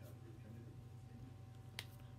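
A single sharp click near the end, over a faint steady hum of room tone.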